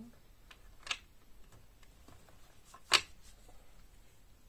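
Tarot cards being handled and drawn from the deck: light clicks, with two sharp snaps, one about a second in and a louder one near three seconds.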